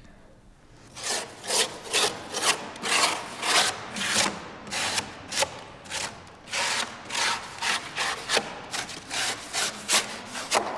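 A long hand blade cutting and scraping the rough surface of a large foam sculpture, in quick back-and-forth rasping strokes, about two a second, starting about a second in.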